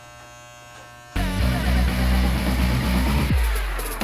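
Electric hair clippers buzzing steadily and quietly, then about a second in loud electronic music with heavy bass cuts in and carries on.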